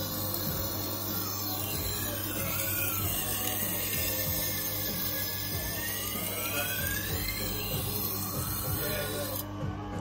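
Tormek T-8 water-cooled grindstone running with a steady motor hum while a knife edge is swept across the wet stone, the grinding hiss rising and falling in pitch as the blade moves along. The hiss cuts off shortly before the end.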